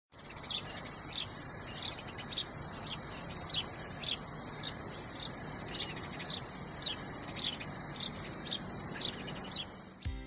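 Nature ambience: a steady high-pitched insect chorus with a short chirp repeated about twice a second.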